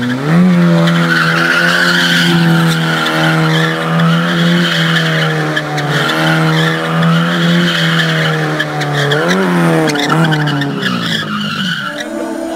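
A car engine held high in the revs, one steady pitch that climbs right at the start and dips and climbs again about nine seconds in, with tyre squeal over it.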